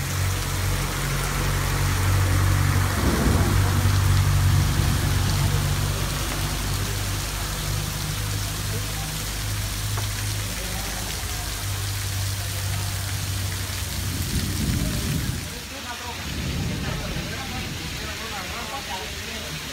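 Heavy thunderstorm rain pouring onto a street, a dense steady hiss with a low rumble beneath it through roughly the first twelve seconds. About a second before the end, the rain noise drops and voices take over.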